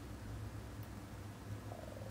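A faint, low, steady hum with no speech.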